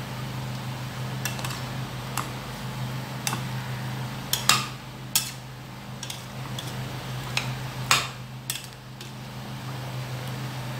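A metal slotted spatula stirs thick diced plantain and potato porridge in a stainless steel pot, clinking and scraping against the pot's sides and rim in irregular strokes. The two loudest clinks come about halfway through and near the end. A steady low hum runs underneath.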